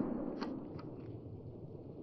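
Rustling of dry brush and leaf litter as someone walks through it, with a few light snaps or clicks.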